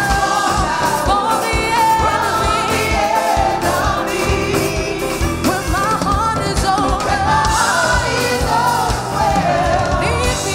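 Gospel praise-and-worship music: a group of singers over a band with a steady drum beat and bass.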